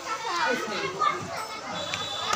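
Voices in the background, with children talking and playing.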